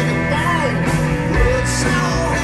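Live rock band playing: electric guitars, bass and drums at a steady loud level, with a lead melody that bends up and down in pitch over the chords.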